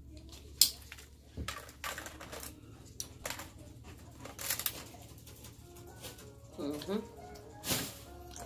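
Hard ribbon candy being snapped and handled: a string of sharp, brittle cracks and clicks, the loudest about half a second in, others spaced irregularly through the rest.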